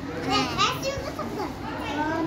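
Young children's voices, playful high-pitched vocalizing without clear words, in two short stretches.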